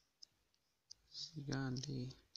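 A few faint, sharp clicks in near quiet, then a person's voice speaking for the last half second or so.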